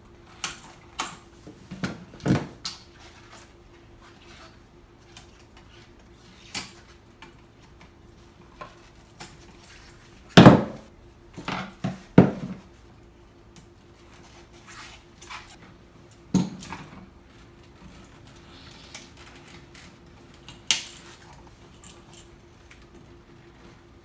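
Irregular metallic clicks, taps and knocks of pliers, stiff copper wire and a plastic duplex receptacle being handled while the wires are bent onto the outlet's terminals. The loudest knock comes about ten and a half seconds in.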